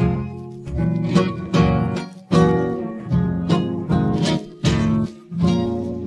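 Instrumental karaoke backing music with no lead voice: strummed acoustic guitar over a bass line, in a regular rhythm of strokes.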